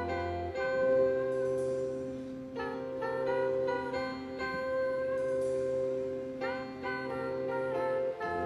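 Live band playing an instrumental passage with no singing: held keyboard chords under clusters of short picked notes that come in every few seconds, without drums.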